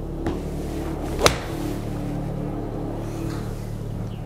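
A single sharp crack a little over a second in: a 56-degree Cleveland RTX4 wedge striking a golf ball off a hitting mat. A low steady hum runs beneath.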